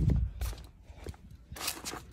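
Footsteps on concrete with rustle from the handheld camera being moved, beginning with a dull thump and a patch of rustle near the end.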